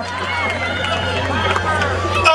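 Concert crowd between songs: scattered voices and calls over a steady low hum from the stage sound system.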